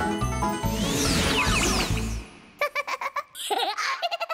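Upbeat children's music with a steady beat and shimmering sweeps, cutting off about two seconds in; then high-pitched cartoon giggling in short snatches.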